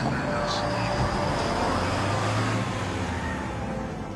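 A low, steady rumble like a vehicle engine or street traffic, from a TV drama's soundtrack. It fades slightly toward the end.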